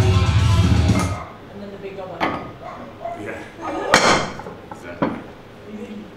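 Background music that cuts off about a second in. After it come a few sharp metallic knocks and clanks of rubber bumper plates being slid onto a barbell, the loudest about four seconds in.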